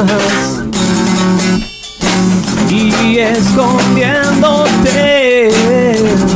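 Small acoustic band playing a song live: acoustic guitar and electric bass, with a short break about two seconds in before the music comes back in.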